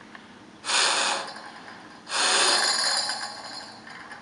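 A man blowing hard twice into a small air tube in the handle axle of a wooden puzzle box: a short puff about half a second in, then a longer blow from about two seconds in that tails off. The breath spins the box's internal fan, which turns a threaded rod and drives the latch plunger to the locked position.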